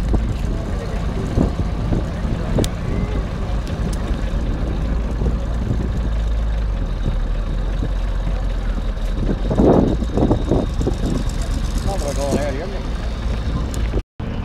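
A car engine idling steadily with a low rumble, while people talk in the background; the voices are clearer in the second half.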